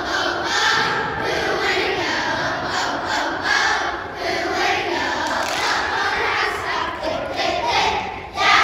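A large children's choir singing together, many voices at once.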